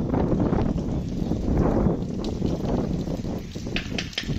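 Wind on the microphone: a steady low rumble that rises and falls a little in strength.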